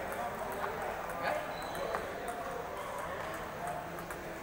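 Table tennis balls clicking off rubber bats and table tops in rallies, a string of sharp, irregular clicks over a hum of voices in a large hall.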